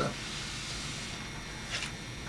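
A pause in a man's speech: steady background hiss and room tone of the recording, with a short soft hiss near the end.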